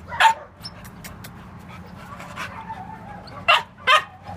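A dog barking three times: one bark just after the start, then two in quick succession near the end.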